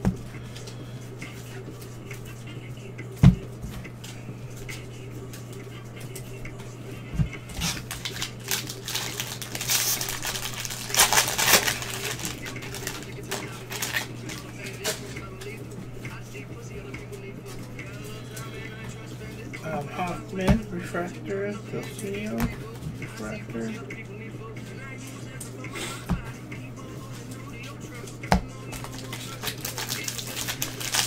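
Trading cards and a foil pack wrapper handled by gloved hands: rustling and crinkling, loudest about 8 to 12 seconds in, with a few sharp knocks of cards on the table. A steady low hum runs underneath.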